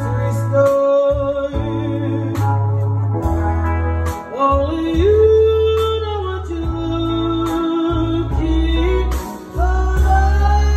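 Live band playing while a female lead singer sings long held notes that slide between pitches, over a steady bass line and drums with cymbal hits.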